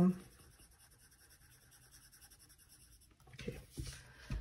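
Pen scratching on a paper tracker card as circles are colored in: a faint run of quick, even strokes. Near the end it stops and a couple of soft thumps follow as the card is handled.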